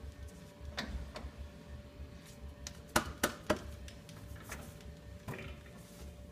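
Light metallic clicks and knocks of tooling being handled at a metal lathe, with three sharp ones in quick succession about three seconds in, over a steady low hum.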